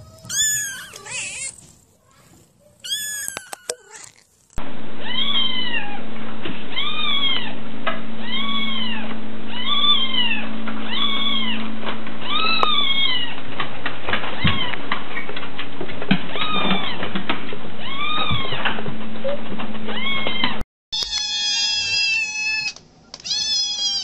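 Cats meowing in a run of short clips. Two meows come near the start. Then a long series of regular meows, about one a second, sounds over a steady low hum. Longer, drawn-out meows come near the end.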